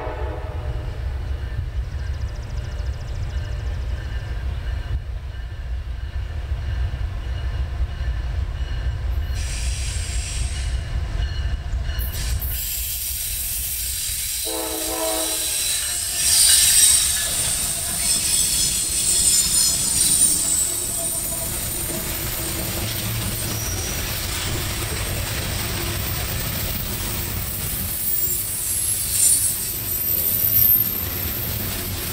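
CSX diesel-hauled loaded coal train approaching with a low engine rumble, sounding a short horn blast about halfway through. The locomotives then pass close by and the loaded coal hoppers roll past with loud wheel-on-rail noise and high-pitched wheel squeal.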